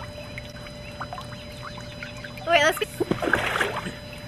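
A girl's short high-pitched squeal about two and a half seconds in, followed at once by water splashing in an inflatable paddling pool for about a second.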